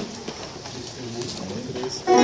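A lull between passages of church music, holding only faint, low voices.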